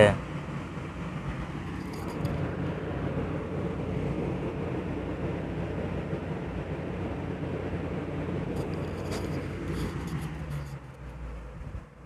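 Steady low background rumble with a few faint clicks, one about two seconds in and several near the end.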